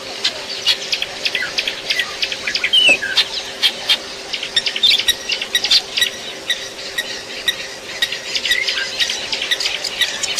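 A dense chorus of many short, high chirps overlapping throughout, with one longer falling call about three seconds in, over a faint steady hum.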